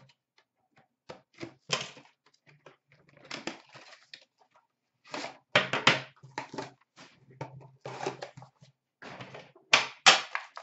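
Handling of a cardboard trading-card box and the metal tin inside it: a run of short clicks, taps and rustles as the box is opened and the tin is set down on a glass counter, busiest about five to six seconds in.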